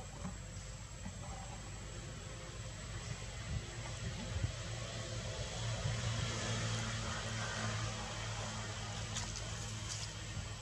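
Steady outdoor background noise with a low rumble that grows louder through the middle and eases off again, under a thin, steady high-pitched tone.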